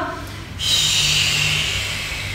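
A long audible breath during a stretching exercise: a steady airy hiss that starts about half a second in and slowly fades.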